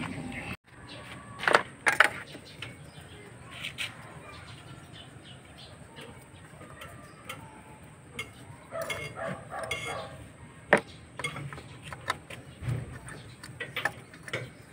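Scattered metallic clicks and clinks of a hand socket wrench working on bolts and brackets at the top of the engine, with quiet stretches between them.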